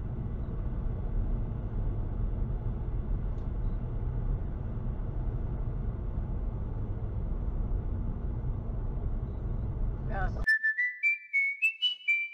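Steady low road and engine rumble of a car driving, heard from inside the cabin by its dashcam, which cuts off abruptly about ten and a half seconds in. Then comes a quick run of short, high whistle notes, each one a step higher in pitch.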